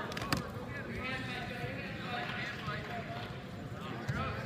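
Voices calling out across a reverberant gym during a wrestling bout, over the dull thuds and scuffs of the wrestlers' feet and hands on the mat. A single sharp knock stands out about a third of a second in.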